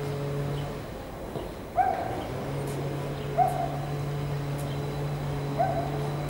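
Steady electrical hum of a Stadler FLIRT electric multiple unit running slowly at the platform, dropping out briefly about a second in. Three short hooting tones, each sliding up quickly and then holding, come over it about every two seconds and are the loudest sounds.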